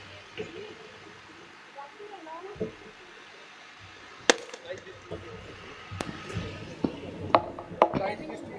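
Faint background voices, with a handful of sharp knocks in the second half.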